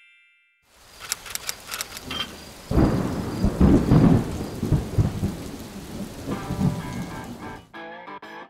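Thunderstorm: rain falling with crackles, then a long, loud roll of thunder about three seconds in that fades over the next few seconds. Music with sustained tones comes in near the end.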